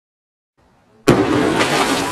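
An explosive charge inside a candy house goes off with a sudden loud bang about a second in, blowing it apart, followed by a continuing hiss with scattered cracks as smoke and debris fly.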